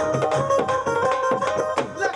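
Live devotional bhajan music: hand-played dholak drum beats over held melodic notes from a keyboard-type instrument.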